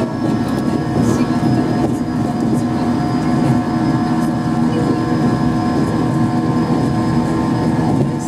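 JR East 115 series EMU under way, its MT54 traction motors and gears giving a steady whine at several pitches over the low rumble of wheels on rail. The pitch holds level, so the train keeps an even speed.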